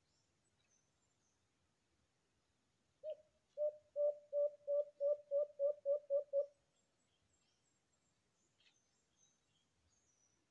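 A dove (alimokon) cooing: a series of about eleven low notes on one pitch, coming a little faster toward the end. Faint high chirps of small birds are heard around it.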